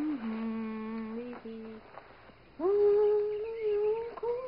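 A woman humming a slow tune to herself, holding long notes, with a short break about halfway through before one note slides up and holds.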